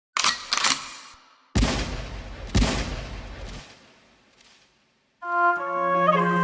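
Two sharp mechanical clicks, like a gun being cocked, then two gunshot sound effects about a second apart, each with a long low rumbling decay. Near the end the track's sustained brass-like chords begin.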